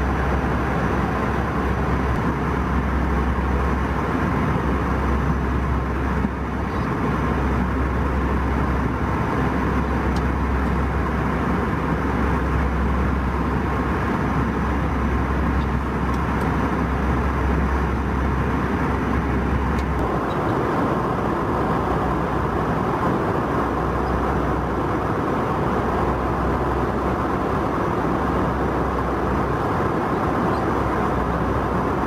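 Steady cabin noise of an Airbus A320 airliner in cruise: a deep rumble under a constant rush of air. About two-thirds of the way through, the lowest rumble drops and changes character.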